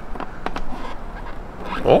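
Steam control knob of a Xiaomi Petrus PE3320 espresso machine being turned by hand, with a few faint clicks and scraping.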